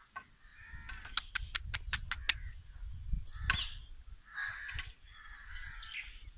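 Crows cawing in rough, repeated calls, the last ones about four to six seconds in. About a second in comes a quick run of about seven sharp clicks, the loudest sounds here, over a low rumble.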